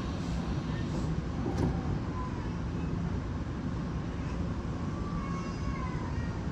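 Taiwan Railway EMU700 electric multiple unit standing at an underground platform with a steady low hum, its sliding doors closing before departure, with one brief knock about a second and a half in.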